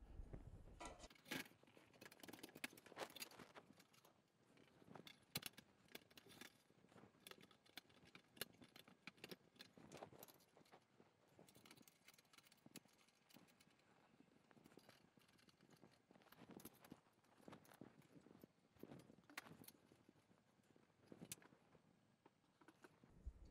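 Faint, scattered clicks and light metallic clinks as aluminium extrusion bars are handled and fitted into a frame and a fastener is turned with an Allen key.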